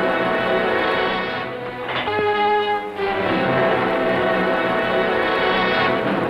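Orchestral film score, led by strings, holding sustained chords that change about two seconds in and again about three seconds in.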